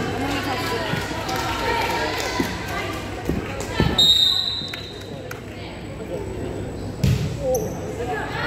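Volleyballs being hit and bouncing on a gym floor: several sharp thumps, the loudest about four seconds in and again near the end, over girls' voices chattering. A short, steady high-pitched tone sounds about four seconds in.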